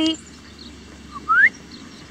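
A two-part whistle a little over a second in: a short steady note, then a quick rising note.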